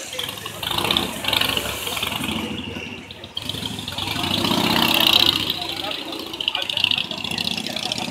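Street noise of vehicle engines running, with people talking in the background.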